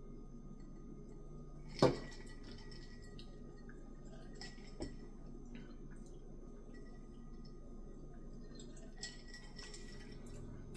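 Liquid drink drops squeezed from a small plastic squeeze bottle into a glass of sparkling water over ice, then the glass handled. The handling makes faint ticks, one sharp click about two seconds in and a smaller one near the middle, over a low steady room hum.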